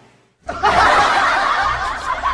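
A person laughing loudly in quick snickering bursts, starting about half a second in after a brief silence.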